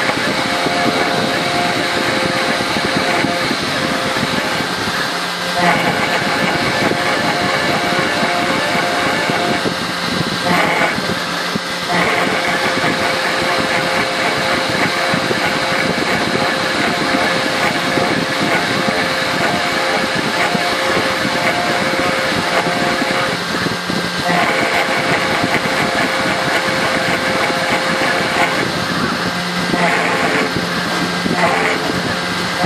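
A 3040T desktop CNC router's spindle running at about 10,000 rpm, with a 90° engraving bit cutting a vector pattern into an aluminium panel. It is a loud, steady machine whine mixed with cutting noise, and its tone shifts every few seconds as the moves change.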